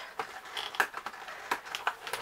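Cardboard advent calendar and its clear plastic tray creaking and clicking as a stuck door is pried open with fingernails, a string of irregular clicks and crackles.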